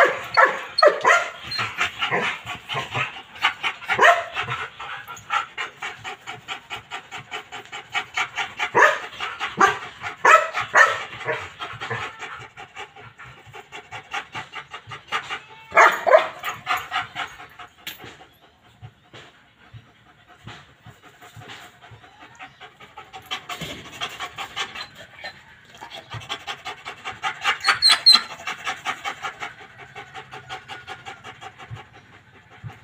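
A Belgian Malinois dog panting hard in quick, rhythmic breaths, with a few louder outbursts along the way and a quieter spell about two-thirds of the way through.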